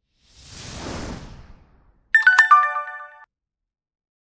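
Outro animation sound effects: a whoosh that swells and fades over about a second and a half, then, about two seconds in, a short bright chime of a few quick ringing notes with clicks, ending about a second later.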